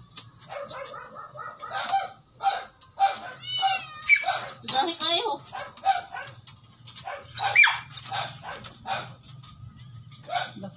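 A dog in a pet carrier barking and yelping repeatedly, some calls sliding up in pitch.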